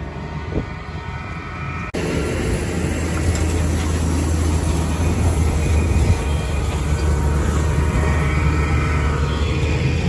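Tractor engine running steadily as it tows an air seeder and tine seeding bar. About two seconds in the sound cuts to a louder, closer rumble and noise as the seeding bar's wheels and tines work through wet, muddy soil.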